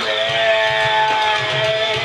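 A male voice singing one long held note into a microphone over guitar-led rock backing music.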